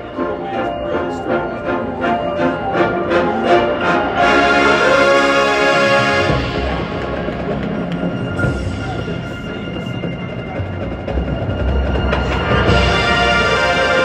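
Marching band and its front ensemble playing: a steady pulsing rhythm for the first few seconds, then loud held chords, with a low drum rumble through the middle.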